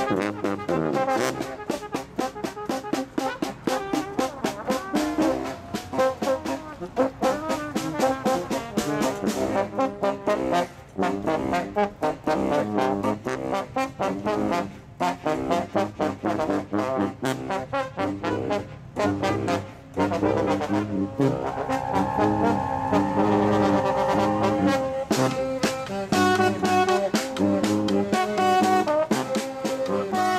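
A brass band playing live: trombone, trumpet and saxophones together over a steady beat. About two-thirds of the way through the horns hold long notes together, then the rhythmic playing resumes.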